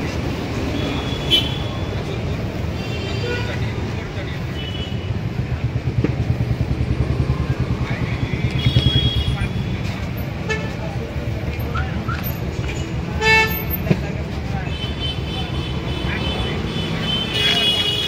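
Street traffic: a vehicle engine runs close by with a throbbing pulse that swells through the middle, and vehicle horns toot several times, with voices in the background.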